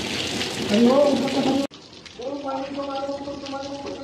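Steady rain hiss with a voice over it, cut off abruptly after about a second and a half; after a short gap, background music comes in with a held chord.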